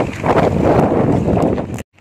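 Wind buffeting a phone's microphone outdoors, a loud irregular rumbling noise. It cuts off abruptly near the end.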